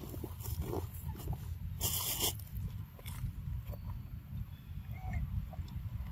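A macaque biting and chewing a ripe papaya close up, with one loud bite about two seconds in and small chewing clicks around it, over a low steady rumble.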